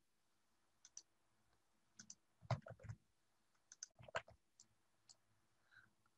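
Faint computer mouse clicks, about a dozen short ones scattered irregularly, some in quick pairs and runs.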